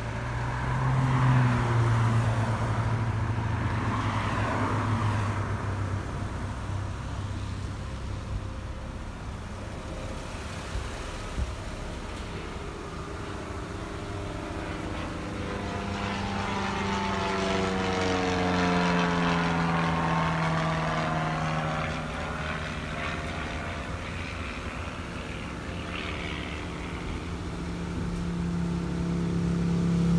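Traffic and road noise heard from inside a moving car, with engine hum whose pitch glides down and back up around the middle as vehicles change speed alongside. It grows louder toward the end.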